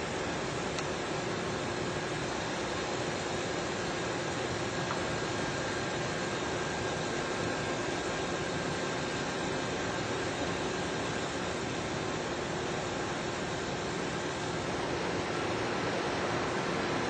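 Steady rushing noise with a faint steady hum running through it, from vehicles idling and passing at the roadside.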